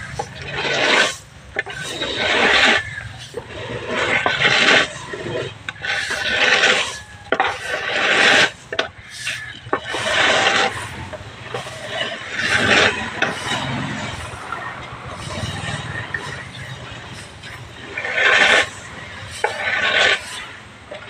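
Corn kernels being raked across a concrete drying floor: a rough scraping swish repeated every second or two, with uneven gaps.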